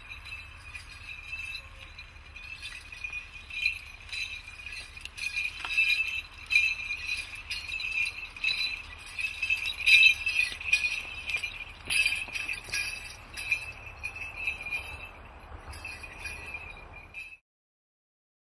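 Small bells on a dancer's regalia jingling irregularly with his steps as he walks through the woods. The jingling grows louder as he approaches and cuts off suddenly about three-quarters of a second before the end.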